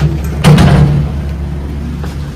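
Steady low hum of a moving passenger lift, with a sudden loud thump about half a second in.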